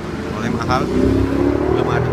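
A motor vehicle engine running close by, growing louder about half a second in with its pitch drifting slightly upward, with voices over it.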